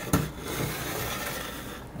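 Wooden display-case boards handled and turned over by hand: a light knock of wood near the start, then a steady rubbing as the boards shift.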